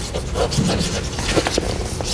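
Chalk writing on a chalkboard: a run of quick, short scratching strokes as a word is written out.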